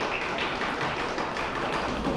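Table tennis ball tapping off bats and table during a serve and the start of a rally, over the steady noise of a busy hall where other tables are playing.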